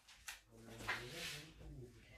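Faint handling of plastic food tubs: a few light clicks and knocks as they are moved about.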